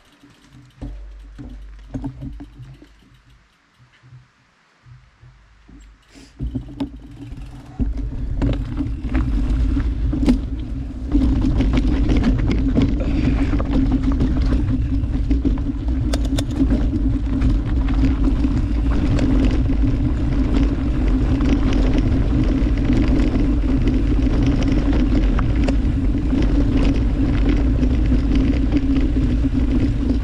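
Mountain bike rolling down a rocky dirt trail. Tyres rumble steadily and the bike rattles and clicks over rocks. It starts quietly with a few knocks, picks up a few seconds in, and gets louder at about eleven seconds as speed builds.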